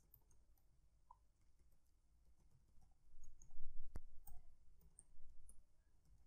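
Computer keyboard typing: near silence at first, then a run of short key clicks from about three seconds in, one of them sharper than the rest.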